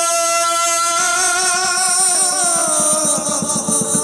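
Chầu văn ritual music: a long, wavering melody line that glides downward midway, over a fast, even tapping beat that comes in about a second in.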